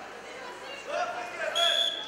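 Shouting voices of coaches and spectators, then a short, steady referee's whistle blast about one and a half seconds in, stopping the bout.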